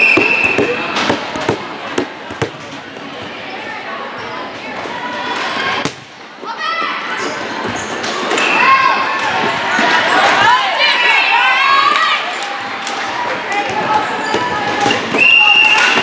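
Indoor volleyball rally: a referee's whistle blast at the start, then the ball struck with several sharp smacks, then players and spectators calling out and shouting together for a few seconds, with another whistle blast near the end.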